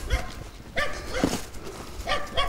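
A dog barking: a few short barks spread through the moment.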